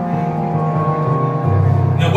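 Electronic keyboard playing sustained chords under the service, the bass stepping down to a lower, fuller note about one and a half seconds in.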